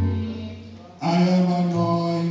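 A man's voice singing long held notes through a microphone: one note fades away and a new, louder one begins about a second in.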